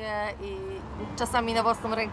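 Indistinct voices of people talking on a city street, with a low traffic rumble underneath.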